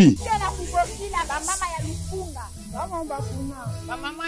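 Background music with a low bass line under the voices of a crowd talking and calling out over one another.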